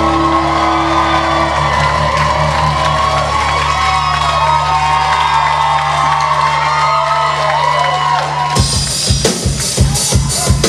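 Live rock band holding a steady sustained chord while the crowd cheers and whoops. About eight and a half seconds in, the drum kit comes in with a fast beat.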